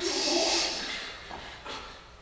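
A man's voice: a sudden breathy exclamation, a short voiced note with a strong rush of breath, fading away over about a second.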